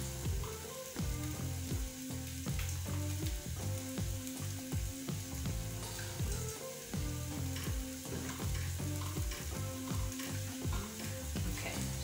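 Wire whisk stirring a milk-and-flour white sauce in a stainless steel pot, with quick repeated strokes against the pot.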